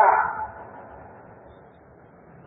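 A pause in a man's speech: his last word trails off and fades over about half a second, then only a faint steady hiss remains.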